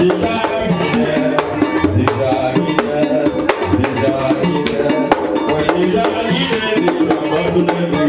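Live Vodou drumming: several hand drums and other percussion playing a fast, steady rhythm, with voices singing over it.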